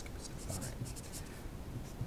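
Marker pen writing on paper: a quick run of short scratchy strokes in the first second or so, then fainter.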